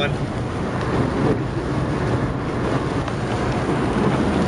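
Steady road noise inside a small car's cabin while driving at speed: tyre and wind noise over a low engine rumble.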